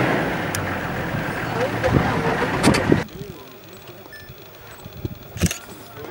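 Vehicle engine running with a steady low hum, which stops abruptly about three seconds in. After that it is much quieter, with one sharp knock near the end.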